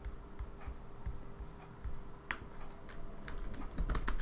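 Computer keyboard typing: a few scattered soft keystrokes, over a faint steady hum.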